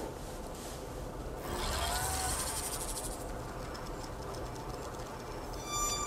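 Quiet ambient sound design from a film trailer's opening: a soft hiss that swells for a second or so about a second and a half in. Near the end a sustained high, steady tone starts.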